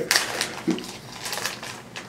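Foil wrapper of a trading-card pack crinkling as it is torn open and the cards are pulled out, in a few short rustling crackles.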